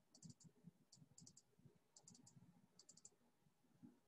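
Faint computer mouse clicks in about five quick runs of two to four clicks, the double-clicks of opening folder after folder.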